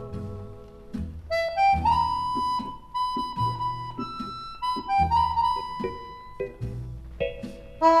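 Instrumental dance music led by an accordion playing a melody with long held notes over a steady bass line.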